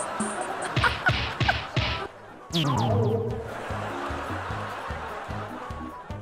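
Laughter in short bursts for about a second, then a comic falling-pitch sound effect that leads into a steady background music cue.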